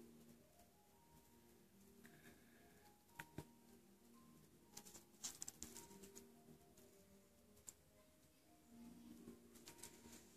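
Near silence: faint background music with a few small clicks and taps from a nail tool and small decorations being handled.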